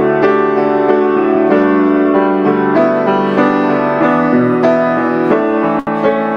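Piano playing a hymn accompaniment in full sustained chords that change about once a second, with a brief dropout in the sound just before the end.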